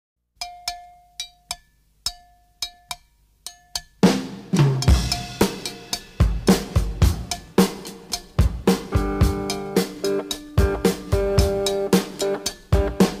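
Children's TV show opening theme music: a few separate drum hits for the first four seconds, then the full band comes in with a steady drum beat and sustained chords.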